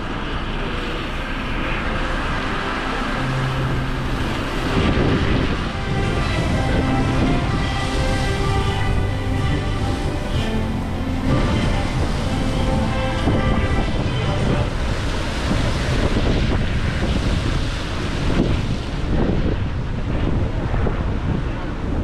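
Wind buffeting the microphone on an open ship's deck, with the fountain show's music playing faintly underneath.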